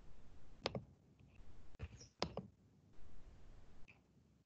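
Faint line noise with two sharp clicks, one under a second in and another a little after two seconds.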